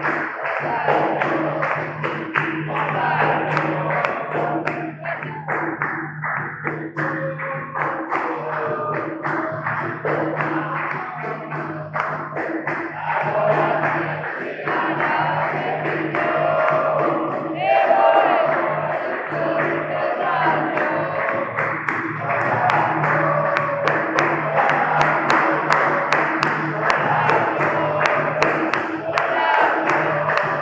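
Live capoeira roda music: berimbaus and an atabaque drum playing a steady rhythm, with hand clapping and group singing over it.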